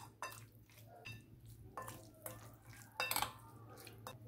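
Metal spoon stirring small fish in a thick spice marinade in a glass bowl, with a few scattered clinks of spoon against glass, the loudest about three seconds in.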